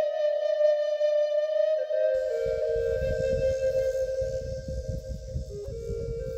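Native American flute music: a slow melody of long held notes. About two seconds in, a low, uneven wind rumble on the microphone comes in beneath it.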